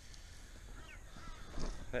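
Faint bird calls, a few short chirps about a second in, over a low outdoor rumble, with a man's voice starting near the end.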